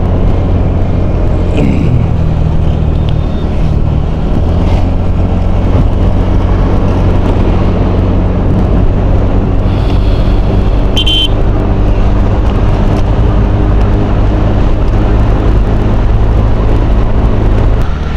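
Motorcycle riding at steady road speed: a continuous engine drone under heavy wind rumble on the bike-mounted camera's microphone. A brief high-pitched tone sounds about eleven seconds in.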